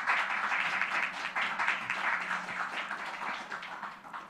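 Audience applauding, starting suddenly and slowly dying away.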